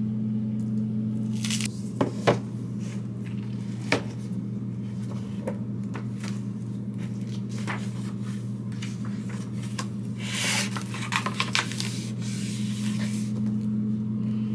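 Pages of a hardcover journal being leafed through: papery rustling and a few sharp taps and clicks, with the busiest rustling about ten to eleven seconds in. A steady low hum runs underneath.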